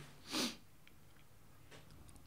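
A man's single short sniff through the nose, about a third of a second in, followed by quiet room tone with a few faint clicks.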